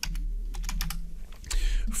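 Computer keyboard keys clicking: a short, uneven run of keystrokes over a low steady hum.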